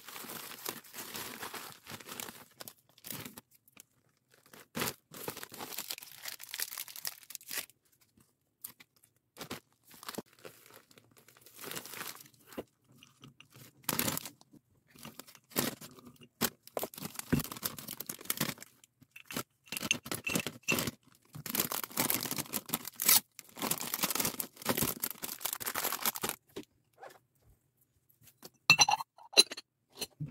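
Bubble wrap and plastic packaging crinkling and rustling under hands in irregular bursts with short pauses. Small plastic balls are handled partway through, with a few sharp clicks.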